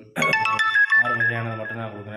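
A short electronic tune of quick, bright stepped notes, like a phone ringtone, starting suddenly just after the start and playing for about a second and a half.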